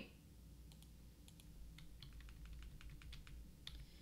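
Near silence with faint computer-keyboard typing: a scatter of light key clicks over a low steady hum.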